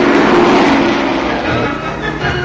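Propeller engine of a flying car in flight, passing the camera: loudest about half a second in, then easing off a little lower in pitch as it moves away.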